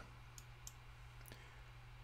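Near silence with a faint low hum and three faint, short clicks.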